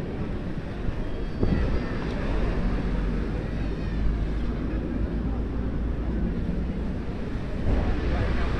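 Busy beach ambience: a steady low rumble with faint, distant voices of beachgoers.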